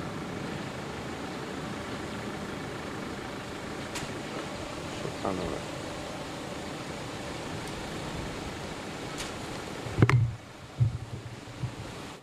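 Outdoor street ambience: a steady background rush with faint distant voices, a couple of light clicks, and a sharp low thump about ten seconds in.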